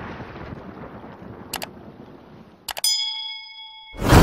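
Intro sound effects: the rumbling tail of an explosion effect fades out, then come clicks and a bell ding that rings on. This is a subscribe-button click and notification-bell sound effect.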